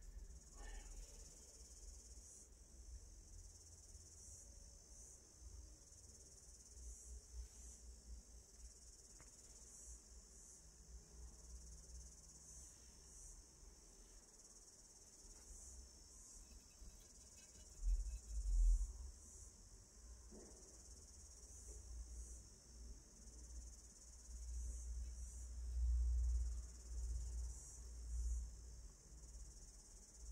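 A faint, steady, high-pitched chorus of insects, broken by a few low rumbles, the loudest about two-thirds of the way in and near the end.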